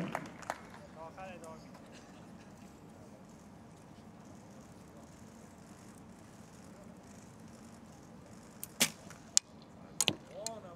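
Recurve bow shot: a long quiet hold, then a sharp snap of the released bowstring near the end, followed by another sharp click about half a second later.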